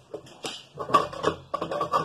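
Indistinct voices talking in short broken bits, too muffled to make out words.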